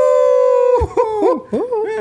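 Men laughing hard: one long, high-pitched held cry of laughter, then a run of short laughs that swoop up and down in pitch.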